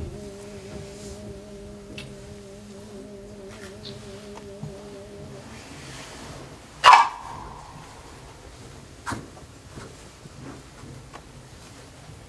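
A long, wavering held vocal call ends about five and a half seconds in. About seven seconds in comes one sharp, loud strike on a sogo, a small Korean hand drum, with a ringing tail, and a lighter strike follows about two seconds later.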